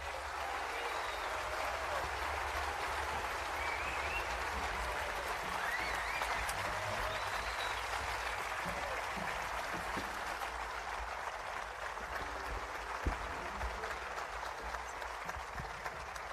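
Audience applauding steadily after a piece of music ends, with a few voices calling out in the middle of the applause.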